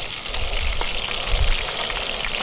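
Trout steaks sizzling in a hot frying pan as they are lifted out, a steady crackling hiss, with wind rumbling on the microphone underneath.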